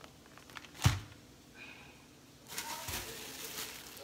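A single sharp knock about a second in, then a clear plastic produce bag rustling and crinkling as it is handled in the last second and a half.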